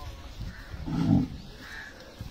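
One of the cattle gives a single short, low call about a second in, close to the microphone.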